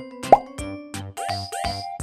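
Bright children's background music with a steady beat. About a third of a second in, a quick rising 'bloop' sound effect is the loudest sound, and in the second half two upward swooping sound effects follow.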